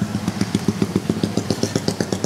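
A metal spatula clattering rapidly on a flat steel griddle as the cook works and flips burger patties, about ten even strikes a second, over a steady low hum.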